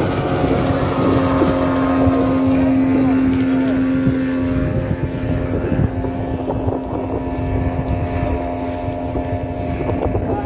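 Outboard motor of a small open motorboat running steadily at one pitch, fading somewhat after the first few seconds, with wind buffeting the microphone.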